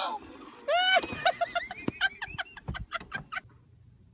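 A person's high-pitched cackling laugh: one long whooping cry just before a second in, then a quick run of short hee-hee bursts that trail off before the end, with a couple of sharp knocks among them.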